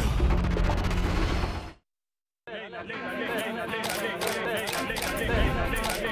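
A TV station's advertising-break bumper jingle, music with a heavy bass, fades out a second and a half in. After a short gap of silence the soundtrack of a commercial begins: a busy mix with repeated sharp clicks.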